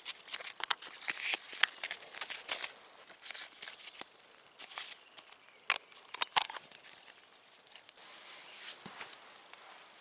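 AeroPress paper filters rustling and crinkling in the fingers, with sharp plastic clicks as the filter cap and chamber are handled and fitted. The handling noise stops about seven seconds in, leaving a quieter outdoor background.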